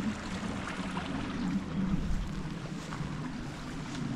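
Wind buffeting the microphone in a steady low rumble, with a small moorland stream running underneath.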